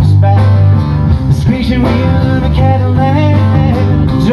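Live band playing a country-style song: strummed acoustic guitar over electric bass and drums, with a pitched melodic line between the sung phrases.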